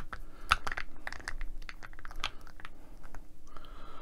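Rubber model-truck tyres and plastic wheel hubs rubbing and clicking against each other as two wheels are pressed together and twisted to engage: a run of small clicks and scrapes, the sharpest about half a second in.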